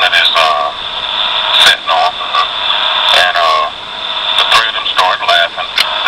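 Speech from a taped conversation played back, hard to make out, over a steady hiss and a thin high-pitched whine.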